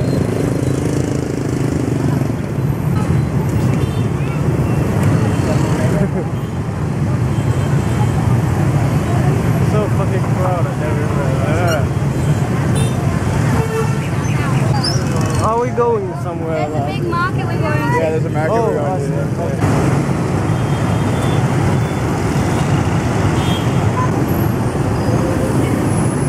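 Dense city motorbike and scooter traffic: a steady, loud din of many small engines, with people's voices mixed in.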